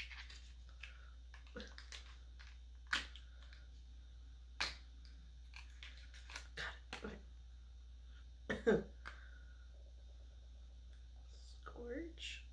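Scattered clicks, taps and knocks of small plastic cosmetic packaging being handled and opened, the loudest a close pair of knocks about two-thirds of the way through.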